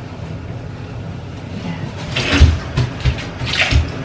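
A pot being dried with a cloth and handled at a stainless steel kitchen sink, with water and splashing sounds. In the second half come a few dull knocks of the pot and two brief splashes.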